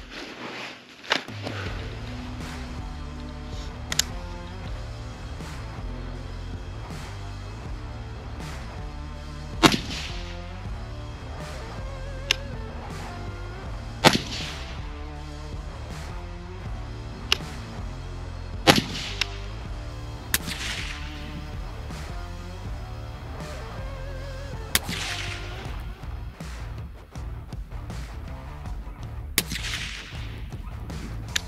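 Three suppressed rifle shots from an 11.5-inch short-barrelled rifle fitted with a Gemtech HALO suppressor, about four to five seconds apart in the middle of the stretch, each a sharp crack with a short ringing tail. Fainter sharp clicks fall between them, over a steady background of music.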